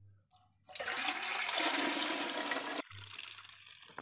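Water poured from an aluminium pot into a large aluminium cooking pot, splashing steadily for about two seconds and cutting off suddenly, followed by a quieter pouring.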